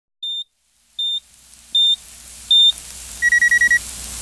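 Digital kitchen timer beeping: four short high beeps about three-quarters of a second apart, each louder than the last, then a quick run of lower-pitched beeps near the end as it reaches zero. A faint low hum builds underneath.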